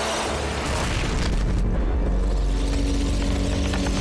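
Action-film sound design of a giant creature smashing through a skyscraper: a loud, sustained deep rumble with crashing debris, mixed with dramatic music.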